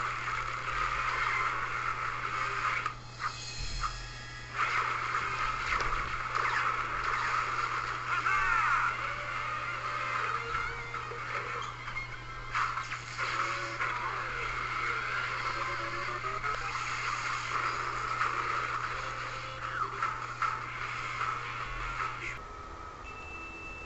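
Cartoon soundtrack music playing continuously over a steady low hum.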